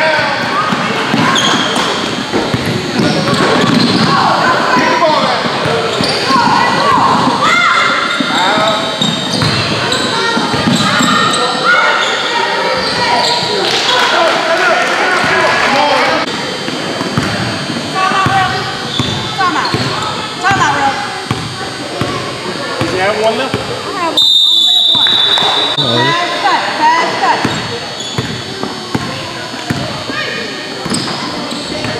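Basketball being dribbled and bouncing on a hardwood gym floor during play, with shouting voices of players and spectators echoing in a large hall.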